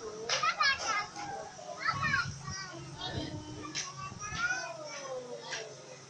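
Young children's high voices chattering and calling out to each other at play.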